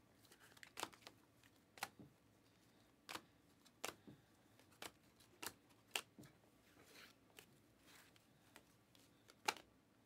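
Light, sharp clicks of glossy Panini Optic basketball cards being flicked one at a time from the front to the back of a hand-held stack, roughly one card a second.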